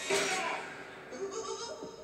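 A high, wavering voice cries out twice from a horror film trailer's soundtrack: once at the start, then again in a longer call about a second in.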